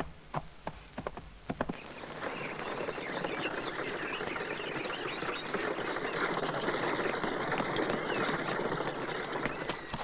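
Horse hooves clopping for the first couple of seconds. Then a steady, dense wash of outdoor sound full of small chirps, like a bird chorus, while a horse-drawn carriage approaches, with hoof clops again near the end.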